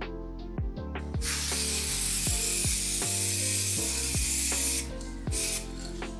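Aerosol spray-paint can hissing in one long spray of nearly four seconds, then a short burst, over background lofi music with a steady beat.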